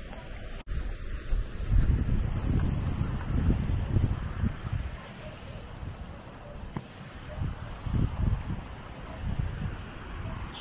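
Wind buffeting the microphone in uneven gusts, a low rumble over a steady hiss, with a single sharp click just after the start.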